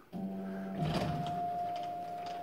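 Steady electronic drone of a sci-fi spaceship ambience, starting suddenly. It holds one high tone throughout, and a lower tone steps down in pitch about a second in, with a few faint ticks over it.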